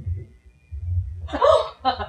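A woman's sharp, startled gasp about a second and a half in, as a man appears behind her unexpectedly, with her speech beginning just after it.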